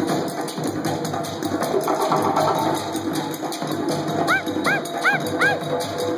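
Live hand drumming on djembe-type drums, a dense, fast, steady beat. Near the end, four short swooping high calls sound over the drums in quick succession.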